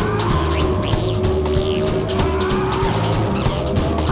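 Instrumental passage of a rock song: a drum beat and bass line with guitar notes that slide up and down.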